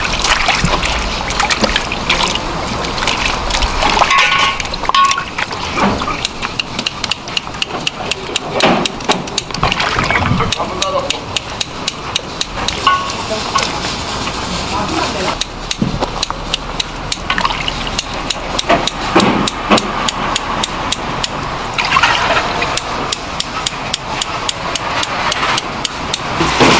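Hands sloshing long garaetteok rice-cake strands in a tub of water, then kitchen scissors snipping the strands quickly into short pieces, many sharp clicks in a row, with voices in the background.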